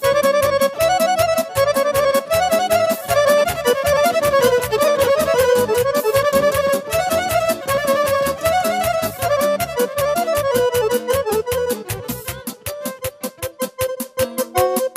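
Romanian folk dance music, hore and sârbe: an accordion plays a fast, ornamented instrumental melody over a steady, quick band rhythm.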